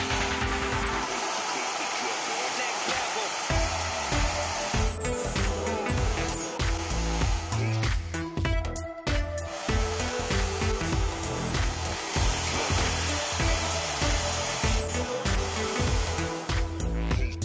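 Background music with a steady beat, over the steady whir of a drill press boring through a sheet-steel PC case base.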